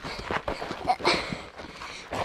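Footsteps scuffing and knocking over a rocky, gravelly trail, an uneven run of short irregular knocks, with rubbing and bumping of the hand-held phone.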